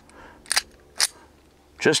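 Two sharp metallic clicks about half a second apart as a Rock Island Armory Officer's Model 1911 .45 ACP pistol is worked by hand, readying it to fire.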